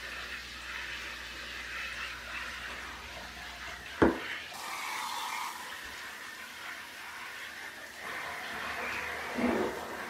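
Handheld shower head spraying water over potted pothos plants in a bathtub, a steady hiss of water on leaves, rinsing off mealybugs. A sharp knock about four seconds in.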